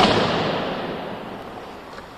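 Ice-skate blades scraping across rink ice: a hiss that starts suddenly and fades away over about two seconds.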